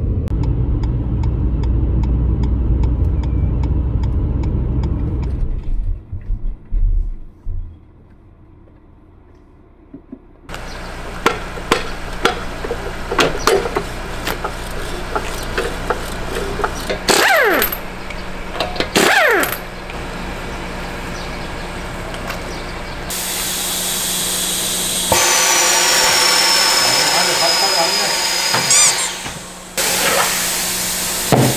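Low road rumble inside a moving car, then, after a short lull, tyre-shop work on a car raised on a floor jack: scattered metal clanks and knocks, two falling whirs from a power tool, and a louder steady machine noise near the end.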